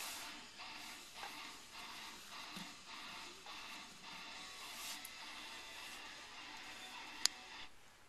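Faint music in the background, with soft ticks as a small plastic action figure's arms and wings are moved by hand, and one sharp click near the end as it is stood on a wooden desk.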